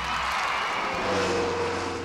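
Theatre audience applauding and cheering as a stage musical number ends. From about a second in, a steady held low note sounds underneath.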